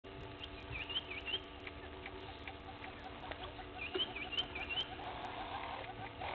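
Birds calling at dawn: one bird repeats a short phrase of quick whistled up-and-down notes twice, over a fast steady run of lower notes and scattered faint clicks.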